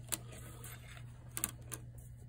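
A few light clicks as multimeter test probes are put down on a workbench: one just after the start and two close together about a second and a half in, over a low steady hum.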